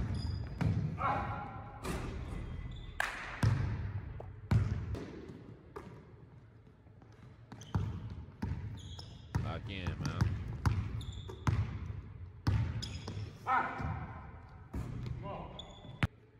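A basketball dribbled on a gym's hardwood floor: a string of sharp bounces at an uneven pace, with voices now and then between them.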